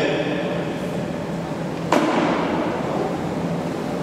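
A single sharp knock that rings briefly, about two seconds in, over a steady low drone in a large, echoing hall.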